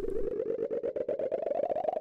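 Synthesized electronic sound effect: one steady tone that rises slowly in pitch, pulsing rapidly, then cuts off suddenly at the end.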